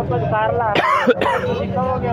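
A man gives a short, throat-clearing cough about a second in, over men talking close by.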